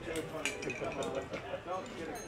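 Indistinct voices talking, not close to the microphone, with a couple of light clinks about half a second in.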